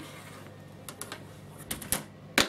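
Rotary cutter rolling along a quilting ruler on a cutting mat, faintly, as fabric is trimmed. It ends in a quick cluster of sharp clicks from the cutter and ruler being handled.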